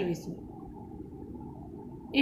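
A spoken word trails off just after the start, then a steady low background hum with nothing else over it.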